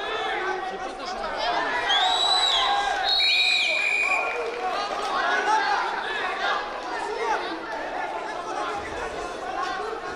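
Arena crowd of spectators and coaches shouting and chattering over one another during a wrestling bout, with a few brief high-pitched tones about two to four seconds in.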